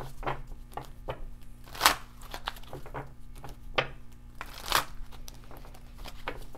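A deck of oracle cards being shuffled and handled: an irregular run of short slaps and rustles, with two louder strokes about two and about five seconds in.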